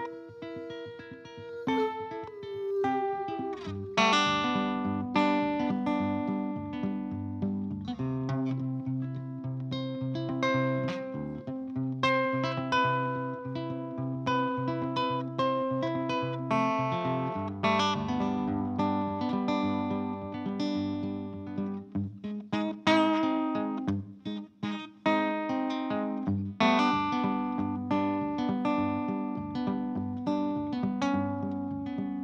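Solo hollow-body guitar playing an instrumental break: a picked melody of single notes over a steady run of bass notes.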